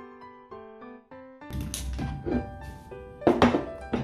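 Soft piano background music, then from about halfway in a clatter of handling noise and knocks, the loudest a thunk a little after three seconds, as glass bowls are moved and set down on a wooden table.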